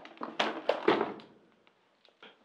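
A few short taps and knocks in the first second or so, then near silence.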